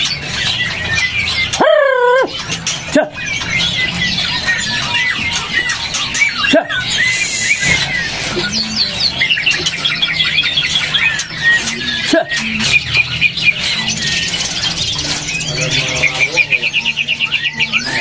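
Caged white-rumped shama (murai batu) singing: a busy, unbroken stream of whistled phrases and chirps, with a louder gliding call about two seconds in and a fast trill of repeated notes near the end. A few sharp clicks sound over a low steady background hum.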